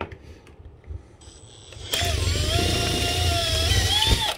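Cordless drill starting about halfway in and running steadily as it drills out a screw hole in the window frame, its pitch rising slightly near the end.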